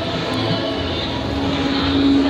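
A steady, engine-like droning hum.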